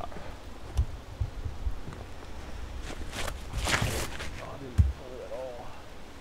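Footsteps on an artificial-turf tee pad as a disc golfer steps into a drive, with a louder thud near the end as he plants for the throw. A brief rushing noise comes about midway, and a short vocal sound follows the thud.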